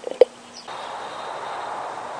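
A single sharp click, then under a second in a steady rushing hiss begins: an isopropyl-alcohol flame burning in a tin can under a copper coil, with the coil steaming.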